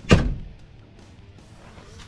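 A single sharp thump just after the start, dying away within about half a second, followed by a faint steady background.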